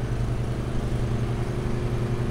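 Ride-on lawnmower engine running steadily at an even pitch.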